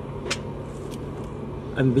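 Steady low hum of an idling vehicle engine, with one short light click about a third of a second in.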